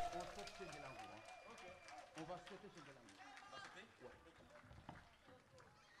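Audience clapping and cheering, fading out steadily. A held note from the band dies away right at the start.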